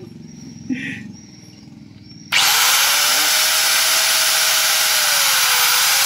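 A handheld angle grinder switched on about two seconds in and running steadily at full speed with a whine, held in the hand and not cutting anything.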